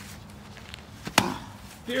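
One sharp smack about a second in, from the wrestlers grappling on the tarp-covered mat; the rest is quiet.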